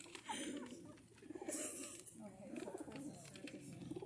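White release doves cooing softly, a few low wavering coos, over quiet murmured talk.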